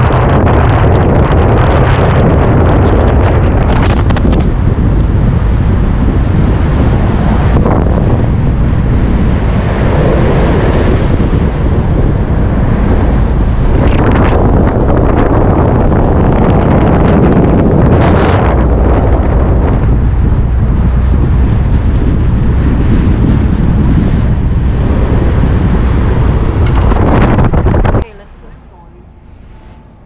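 Strong wind buffeting on the microphone of an action camera mounted on a moving car's roof, with road noise underneath. The sound is steady and loud, then cuts off suddenly near the end, leaving something much quieter.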